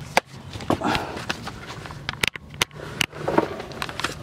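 Camera handling noise: scattered sharp clicks and knocks with rubbing and shuffling as the handheld camera is carried down and under the car.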